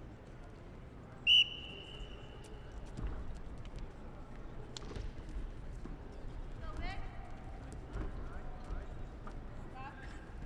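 A referee's whistle blown once, a short high blast about a second in, signalling the start of a wrestling bout; then the wrestlers' feet and bodies thump on the mat amid arena room noise.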